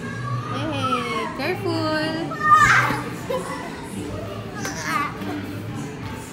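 Children playing: high children's voices calling out, with one loud shout about two and a half seconds in, over a steady low hum.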